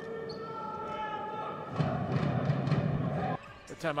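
Basketball game sound in an arena: a ball bouncing on the court over steady background noise. The noise grows louder about two seconds in and cuts off suddenly a little after three seconds.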